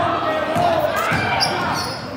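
A basketball bouncing on a hardwood gym floor during play, mixed with unclear voices calling out, all echoing in a large gym.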